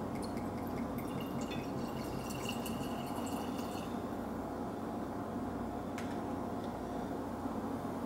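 Gin poured from a glass bottle into a stemmed tulip glass: a thin trickle of liquid filling the glass over the first four seconds or so. A single light click follows about six seconds in.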